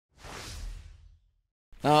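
A whoosh sound effect lasting about a second, swelling and then fading out, followed by a moment of silence before a man starts speaking near the end.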